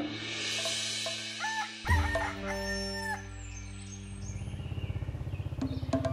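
A rooster crows once, about two seconds in, over background music. From about four seconds a small motorcycle engine comes in with a fast, low putter, growing louder as it approaches.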